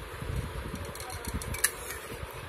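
Kitchen knife cutting set jelly in a melamine dish, with soft knocks and a sharp click of the blade against the dish near the end, over a steady fan hum.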